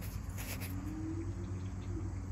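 Faint insects chirping over a low steady hum.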